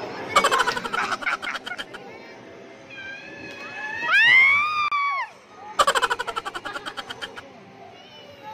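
Arcade game machines: two runs of rapid rattling clicks, each lasting about a second and a half, the second fading away. Between them comes a loud pitched sound that swoops up and then down.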